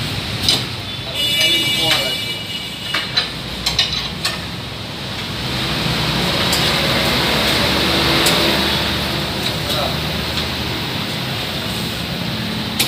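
Low-profile tyre being levered onto an alloy rim on a manual tyre changer: sharp metal clinks and knocks of the steel tyre bar against the rim and the changer's mounting head in the first few seconds, with a brief high squeal about a second in, over steady background noise.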